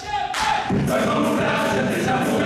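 Murga chorus singing in full voice. A single held note opens, and the whole chorus comes in loud about half a second in and holds.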